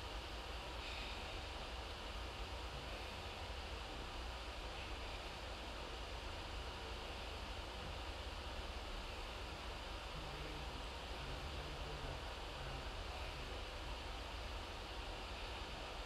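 Quiet, steady room tone: even background hiss with a low hum and no distinct sounds.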